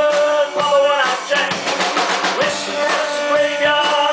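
Live rock band playing an instrumental passage between sung lines: electric bass and electric guitar over drums.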